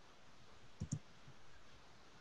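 Two quick clicks in close succession about a second in, over faint room tone, from the computer being worked while drawing.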